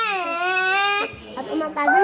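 A young child's voice holding one long, high, wailing note that slides down in pitch, then cuts off about a second in.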